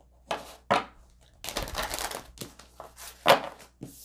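Tarot cards being handled and shuffled on a wooden table: a couple of quick card snaps, a denser burst of shuffling about a second and a half in, and a louder sharp tap a little past three seconds.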